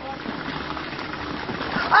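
A toddler's bare feet splashing through a shallow muddy puddle over a steady watery hiss. Right at the end a loud cry rings out as the child slides belly-first into the water.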